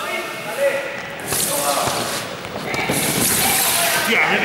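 Vinyl-covered foam gym mats sliding and scraping across a sports hall floor as students race on them: a hissing scrape about a second in and again, longer, in the second half, with voices and footfalls echoing in the large hall.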